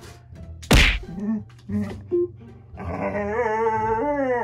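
A husky brings her paws down on a metal wire-mesh rack with one sharp whack about three-quarters of a second in, followed by a few short low vocal sounds. From about three seconds in she gives a long, wavering husky "talking" vocalization.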